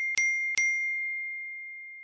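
A bell-like ding sound effect struck twice in quick succession in the first half-second. Each strike sets off one clear high ringing tone that carries on and fades slowly.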